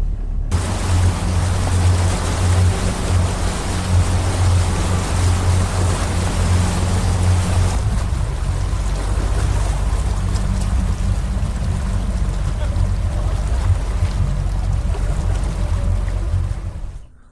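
Motorboat engine running steadily under way with a low hum, over the splash of its churning wake; the water noise comes in suddenly about half a second in.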